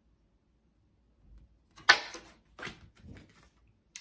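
A large oracle card slapped down onto a wooden table about halfway through, a single sharp smack, followed by a few softer taps and rustles of cards being handled.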